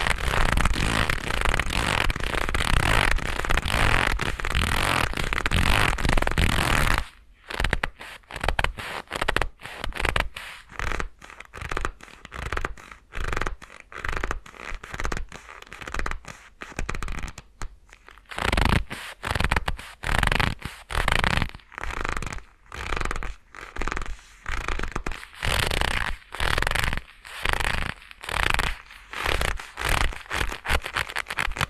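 Leather gloves rubbing and squeezing right up against a binaural microphone. For about the first seven seconds the rubbing is continuous, then it breaks into short separate strokes of about one a second.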